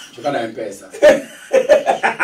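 A person chuckling between words, in a few short voiced bursts, with quick laughing pulses near the end.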